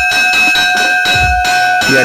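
Hanging brass hand bell struck repeatedly by its clapper, about three strokes a second, ringing on in several steady tones. It is the school bell rung to signal the start of the exam.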